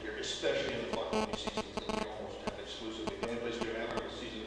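A man speaking to a room, his voice with some room echo, with a few sharp clicks about a second in.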